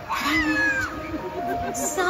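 A drawn-out, meow-like cry that falls in pitch through its first second, heard over the show's music in the arena.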